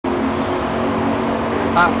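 Steady street traffic noise with a low hum, and a voice briefly saying 'yeah' near the end.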